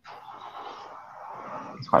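Steady hiss of background noise from an open microphone on a video call, starting suddenly after silence. A man starts speaking near the end.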